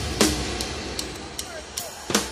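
The live band drops out for a short break. A single drum hit about a fifth of a second in rings away into a quiet lull with sparse clicks and a faint voice. The full drum kit comes back in right at the end.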